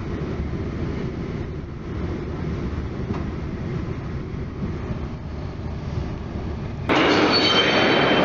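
Steady low rumble of a passenger train running, heard from inside the carriage. About seven seconds in it gives way abruptly to the louder, brighter din of a busy railway station concourse, with several thin, steady high squealing tones.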